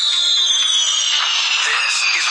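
A long whistle falling slowly in pitch, the cartoon sound effect of a dropping bomb, over background music.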